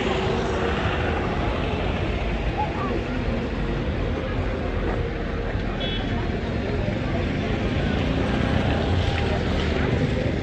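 Busy city street: a steady rumble of passing traffic mixed with the voices of people around.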